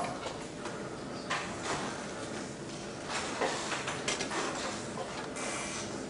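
Faint lecture-hall room noise with scattered small rustles and knocks from the audience; no clear voice.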